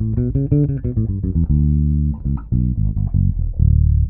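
Electric bass guitar played finger-style on its own: a run of plucked notes in the key of D major, one note held briefly in the middle and a sustained low note near the end.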